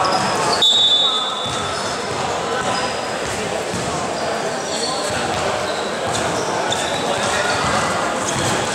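Many voices of players and onlookers talking at once in a large, echoing gymnasium, with a short high-pitched tone just under a second in.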